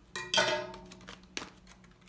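Scissors cutting through a clear plastic blister pack and the plastic being handled: a short squeaky snip near the start, then light clicks and rustles, with a sharp click about a second and a half in.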